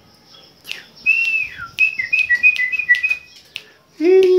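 Chopi blackbird giving a short run of clear whistled notes: a long note that slides down, then quick short notes alternating between two pitches, with a few sharp clicks between them.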